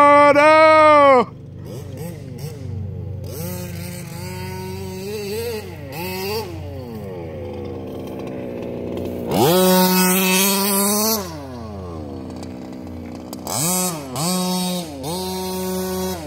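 Small two-stroke engine of a gas-powered RC car revving in bursts, its pitch climbing to a steady full-throttle note and falling back: one burst in the first second, a longer one past the middle, and two short ones near the end, with lower revs wandering up and down between them.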